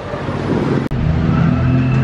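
Street traffic with a motor vehicle engine running nearby. There is a sudden break just before a second in, after which a steady low engine hum takes over.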